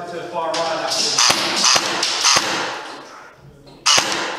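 Airsoft gunfire in a large, echoing room: a voice at the start, then three sharp cracks within about a second, and a loud sharp crack just before the end.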